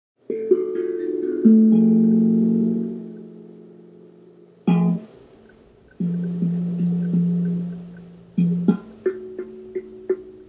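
Background music on guitar: a handful of plucked chords, each struck and left ringing until it fades, with short pauses between them.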